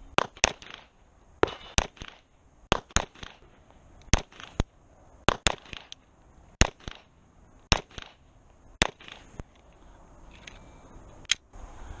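Glock 34 9mm pistol firing about twenty shots, mostly in quick pairs and triples about a second apart, with a longer pause before a last shot near the end.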